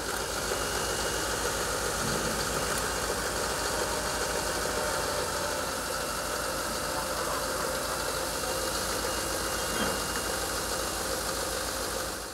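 A vehicle engine idling steadily, with an even low throb.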